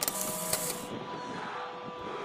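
Edited-in transition sound effect: a burst of hiss in about the first second that fades into a quieter whir, over a faint steady background music drone.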